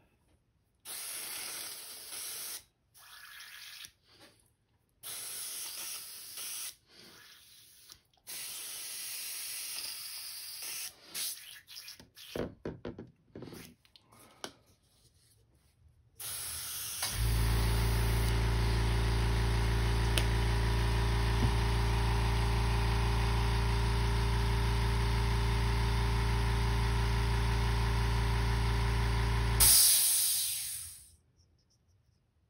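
Airbrush spraying in short on-off bursts of hiss while being cleaned out. About 17 seconds in, a steady motor hum starts under the hiss, typical of the airbrush compressor switching on. It runs evenly, then cuts off abruptly at the end.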